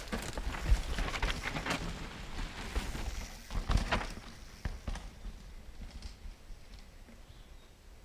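Footsteps crunching and scuffing on a rocky, gritty dirt trail, irregular steps that thin out and stop about halfway through.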